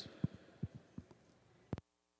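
A few soft thumps on the announcer's microphone, then a sharper pop near the end, after which the sound cuts out suddenly, leaving only a faint steady hum.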